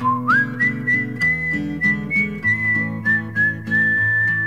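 Radio jingle music: a whistled melody that glides up at the start and then holds high with small steps in pitch, over strummed acoustic guitar.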